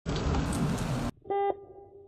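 Steady background noise, then a single short beep about a second and a half in, whose tone rings on and fades out.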